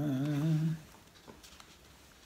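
A man humming one long, steady, slightly wavering note that stops short under a second in, followed by low room noise with a few faint soft ticks.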